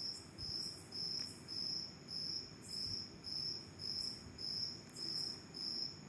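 A cricket chirping steadily, high-pitched, about two chirps a second, over faint background hiss.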